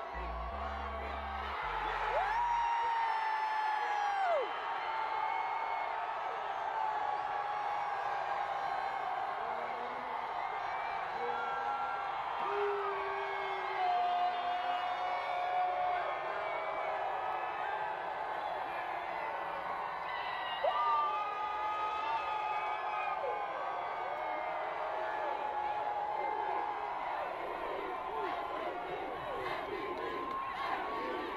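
A crowd cheering, whooping and shouting, with many voices overlapping and no single speaker.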